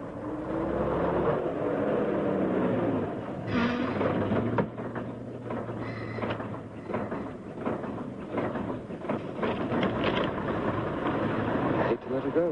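A car engine drawing away in street traffic, its pitch gliding, followed by scattered knocks and clatters.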